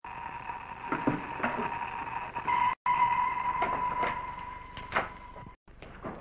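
A steady high-pitched tone that swells louder about halfway through and stops abruptly near the end. Under it come a few light knocks and rustles as a bulky suit is handled into a box.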